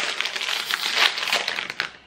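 Plastic Ruffles potato chip bag crinkling as it is handled and pulled open: a dense run of crackles, loudest about a second in, that dies away near the end.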